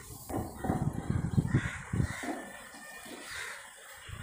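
Birds calling outdoors, with crow-like caws, over rumbling handling noise on the microphone in the first half as the camera is moved.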